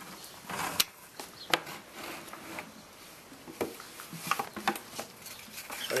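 Handling noise: a few scattered knocks and scrapes as a red plastic bucket and the camera are moved about, with a short rustle about half a second in.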